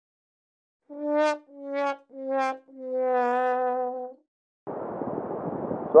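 Sad-trombone sound effect: four brass notes stepping down in pitch, three short and a longer last one that wobbles, the stock comic sign of a letdown. Steady wind noise on the microphone follows near the end.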